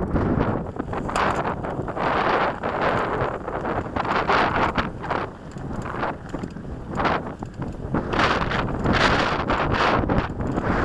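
Wind buffeting the microphone of a camera on a moving mountain bike, in gusting surges, with the crunch of knobby tyres on a dirt trail and frequent small knocks and rattles as the bike rolls over bumps.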